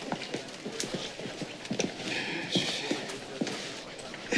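Irregular footsteps and small knocks on a hard floor, with faint voices in the background.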